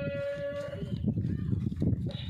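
A man's voice chanting the azan, the Muslim call to prayer, over a distant loudspeaker. One long held note fades out about a second in, and the chant pauses to the end. A low rumble of wind on the microphone runs under it.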